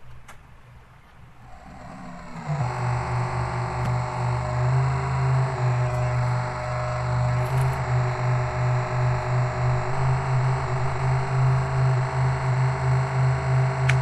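Modified light-sensitive subwoofer instrument with Max/MSP autotuning, coming in with a quick swell about two seconds in and then holding a loud, steady low electronic drone that pulses slightly in level, with fainter steady higher tones above it.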